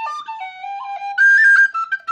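Tin whistle playing an Irish double jig, a quick run of stepped single notes, climbing about a second in to a louder, higher phrase before dropping back.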